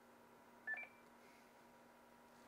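A short two-note electronic beep, the second note higher, from an Icom ID-5100 amateur radio transceiver as it is switched on.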